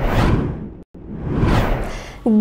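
Two whoosh transition sound effects for a news graphic. The first peaks just after the start and fades; the second swells to a peak about a second and a half in and fades away.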